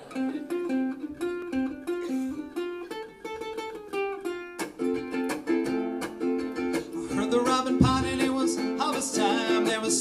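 Instrumental intro on ukulele and lap steel guitar: the ukulele plucks a steady rhythm while the steel slides between notes, more so in the second half. There is one low thump about eight seconds in.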